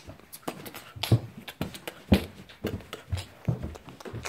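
Footsteps walking across a floor, about two steps a second, picked up by a hand-held phone.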